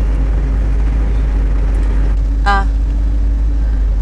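Car running, heard from inside the cabin: a steady deep rumble of engine and road with a faint constant hum. A brief voice sound comes about halfway through.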